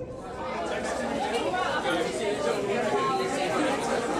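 Indistinct chatter of many voices talking at once, getting louder about half a second in.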